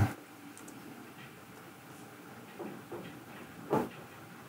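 Quiet room tone with a couple of faint soft sounds, then a single short click shortly before the end.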